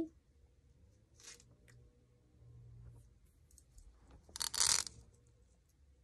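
Plastic pin art toy in its plastic wrap being handled, its many small pins rattling and sliding: a couple of faint brief rustles, then a louder half-second rattle about four and a half seconds in.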